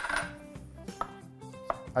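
Background music with a few sharp knocks of a kitchen knife on a cutting board as pitted black olives are halved. The loudest knock comes right at the start.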